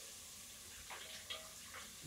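Faint sizzle of food frying in pans on the stove, with a few light ticks of a utensil near the middle.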